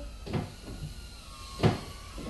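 Two short knocks, the second louder, over a faint thin whine.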